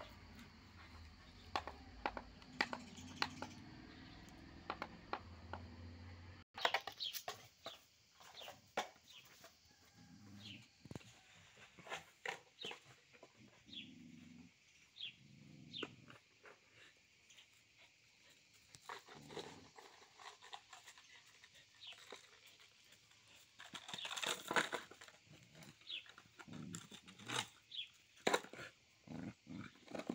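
A small dog mouthing, chewing and pushing a red rubber toy about on dirt and gravel: irregular small clicks, scuffs and snuffles, with a louder scuffling rustle toward the end.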